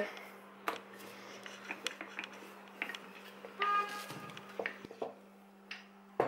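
Wooden rolling pin rolling dough thin on a silicone baking mat: faint scattered light knocks and rubbing over a steady low hum. A little past halfway a brief pitched tone sounds for about half a second.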